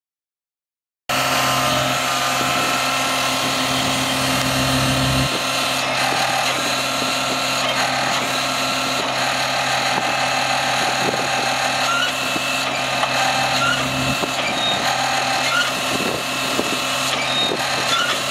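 The John Deere 997 ZTrak's Yanmar three-cylinder diesel engine running steadily. Its low hum weakens about five seconds in and strengthens again about fourteen seconds in.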